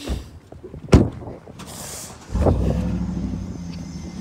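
A sharp thump about a second in, like a car door shutting, then a little past halfway a car engine starts and settles into a steady low idle.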